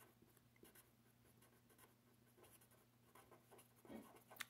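Faint scratching of a felt-tip pen writing on paper, in short, irregular strokes.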